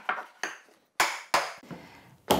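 Holdfasts being struck down into the workbench's holes to clamp a workpiece: four or five sharp knocks with short ringing decays, the loudest about a second in.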